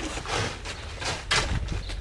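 A hand tool digging and scraping into soil in a woven bulk bag, two scoops about a second apart.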